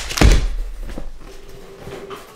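A single dull thump about a quarter of a second in, as a cardboard shipping box is handled on a table, followed by a low rumble of handling noise.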